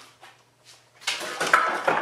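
A 2x72 abrasive grinding belt being pulled off the belt grinder's wheels by hand, its tension released. It makes a rough scraping rustle that starts about a second in and lasts about a second.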